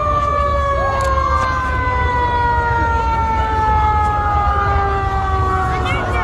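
A vehicle siren sounding one long wail whose pitch slowly falls, with short rising swoops over it and a steady deep rumble underneath.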